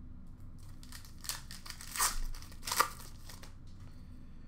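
Crinkling and rustling of hockey cards and their pack wrappers being handled. There are a few louder crinkles between about one and three and a half seconds in.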